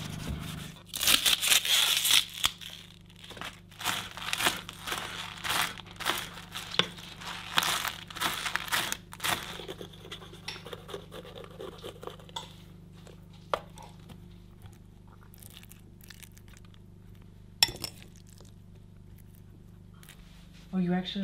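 Food being prepared on a wooden cutting board: rough bursts of rubbing, crinkling and tearing for the first half, then a quieter stretch of scattered knife clicks with one sharper knock near the end, over a faint steady low hum.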